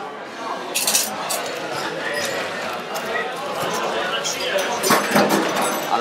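A metal bar spoon stirring a cocktail in a glass tumbler, giving light clinks of metal on glass, with a sharper click about a second in and louder handling knocks near the end.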